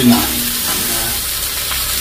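Pieces of pork skin frying in a wok, a steady sizzle.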